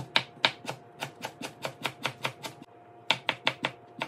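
Chef's knife slicing garlic cloves on a plastic cutting board: quick, even knocks of the blade on the board, about five a second, with a short pause a little past halfway.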